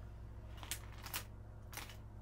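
Three short clicks of a computer mouse in quick succession, over a faint steady hum.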